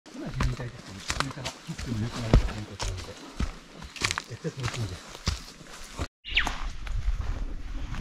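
Footsteps on a dirt forest trail, irregular crunching steps about two a second, with low murmuring voices of hikers. About six seconds in the sound cuts off abruptly, then a brief falling whistle and a steady low rumble follow.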